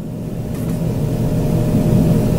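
Steady low rumble of background noise on a caller's telephone line, growing slowly louder, with a faint steady hum in it.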